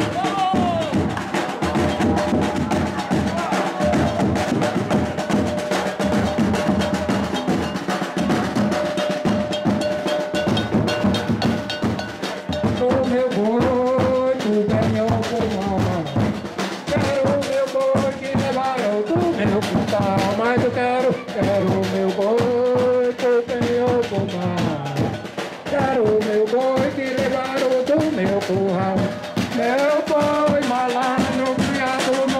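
Folk percussion group of a boi procession playing: large bass drums and snare drums beating a dense, steady rhythm. From about twelve seconds in, a wavering melody rises above the drums.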